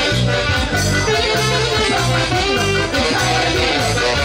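Live band playing dance music, loud and continuous, with a steady repeating bass beat under sustained melody notes.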